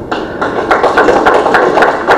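Audience applauding: many quick, irregular hand claps.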